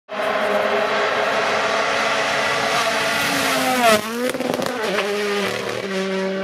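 Toyota Yaris GR Rally1's 1.6-litre turbocharged four-cylinder engine running hard at high revs. About four seconds in the pitch drops sharply at the loudest moment, picks up again, and then settles on a lower, steadier note.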